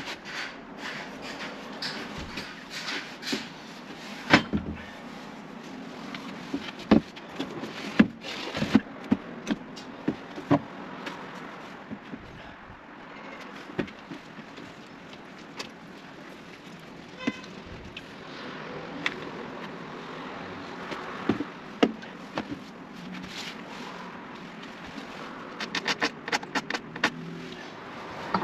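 Scattered light knocks and clicks of a pine timber frame being handled and checked, over a steady faint outdoor background, with the knocks coming thicker near the end.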